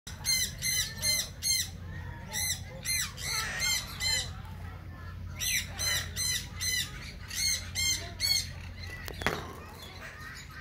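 Meyer's parrot calling: runs of short, high, squeaky calls, about three to four a second, broken by brief pauses. A single sharp click comes near the end.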